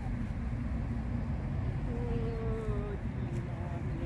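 A steady low rumble, with a few faint held notes of a melody above it, some gliding slowly downward.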